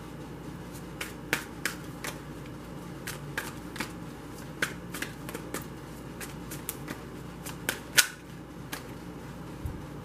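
Tarot deck being shuffled overhand by hand, the cards slapping and clicking together in quick, irregular taps, with one sharper snap about eight seconds in.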